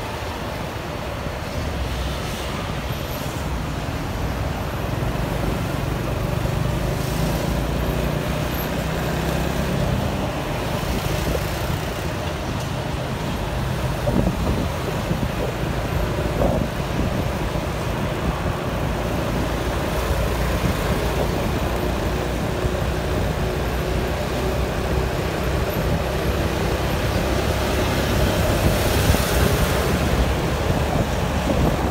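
Steady engine hum and road noise of a vehicle driving up a bridge ramp in heavy city traffic, with the noise of surrounding cars and buses.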